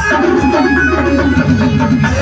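Loud music with a steady beat and a fast run of repeating notes, played for dancing.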